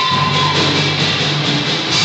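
Live rock band playing an instrumental passage: electric guitars over bass and a drum kit, loud and steady.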